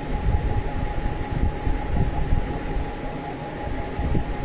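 Steady background hum with a low rumble and one faint, steady high tone, no speech.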